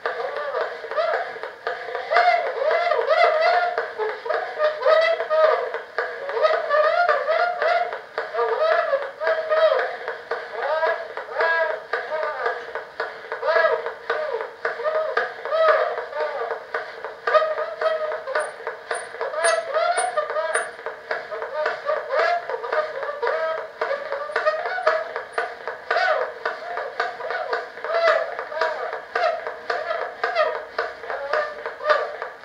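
A Gillette tinfoil phonograph playing back a recording from aluminum foil as its cylinder is hand-cranked: a thin, tinny, distorted voice through the paper horn, with no low end at all, over steady surface hiss and faint clicks.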